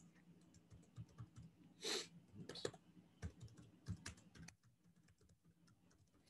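Faint computer keyboard typing: a loose run of soft key clicks that stops about four and a half seconds in, with one brief louder rustle about two seconds in.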